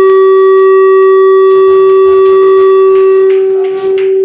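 One loud, steady, high electronic tone through the church sound system, a single held pitch with fainter overtones above it and no change in pitch.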